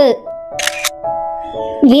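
Background music of held, steady tones, with a short crisp click like a camera-shutter sound effect about half a second in. A spoken word trails off at the start, and speech begins again just before the end.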